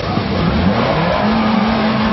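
Car engine revving up as its wheel spins on icy snow: the pitch rises over about a second, then holds high and steady.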